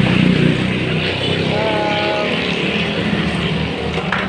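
Tap water pouring and splashing onto a plastic toy refrigerator as it is scrubbed with a brush under the stream: a steady splashing hiss. A brief faint voice sounds about halfway through.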